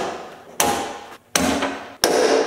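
Push-in wiring-harness clips being popped out of a Jeep JK's steel rear swing-gate: sharp pops about three quarters of a second apart, each ringing on briefly in the door's metal panel.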